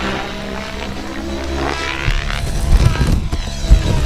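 Radio-controlled 3D aerobatic helicopter flying a pirouetting manoeuvre over music. Its rotor and motor sound rises in pitch about halfway through.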